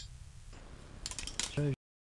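A low steady rumble, with a quick run of clicks and rustles about a second in. A man then starts a word, and the sound cuts off abruptly.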